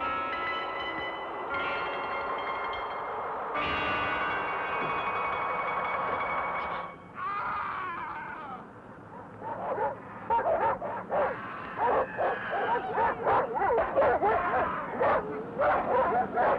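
Sustained, layered chords of film score music, new tones entering in steps, fading out about seven seconds in. Then a short falling whine, followed by dogs barking repeatedly, several barks a second, through the rest.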